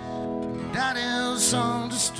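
Live band playing a slow country ballad: held keyboard and acoustic guitar chords, with a short sung phrase coming in under a second in.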